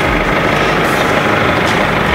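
Pickup truck's engine idling steadily, heard from inside the cab with the door open.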